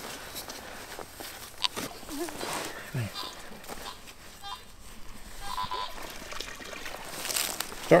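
Hands scraping and pulling loose soil out of a deep dig hole, with scattered small scrapes and clicks and two brief faint tones near the middle.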